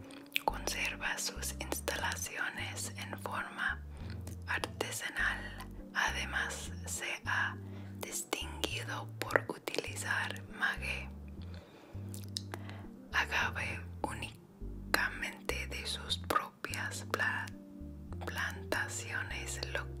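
Soft-spoken woman's voice reading Spanish text aloud, over muffled background music with a low bass line.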